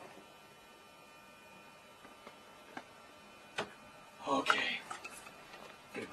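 A faint steady electrical hum, then a sharp click and a brief clatter of knocks and rattles near the end.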